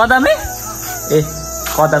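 Insects droning steadily in a high, continuous buzz behind a man's voice.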